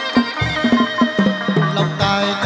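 Live chầu văn ritual music, instrumental only: plucked moon-lute (đàn nguyệt) notes over a quick, even rhythm of sharp wooden clapper strokes.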